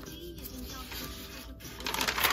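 A steady low hiss, then near the end the crisp rustle of a paper page of a spiral-bound notebook being lifted and turned by hand.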